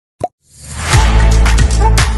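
Logo intro sting: a short pop, then a rising swell into loud music with deep bass and sharp percussive hits.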